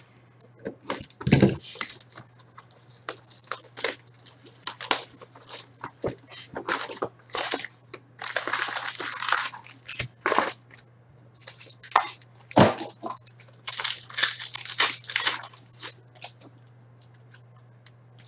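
Plastic wrapping being torn and crinkled as a sealed box of hockey trading cards is opened and its foil-wrapped packs are pulled out and ripped open. The sound comes in irregular bursts of rustling and tearing, over a faint steady low hum.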